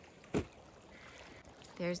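A single short thump about a third of a second in, over quiet outdoor background noise; a woman starts speaking near the end.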